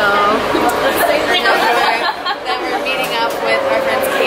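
Several people's voices chattering excitedly over one another, with no clear words.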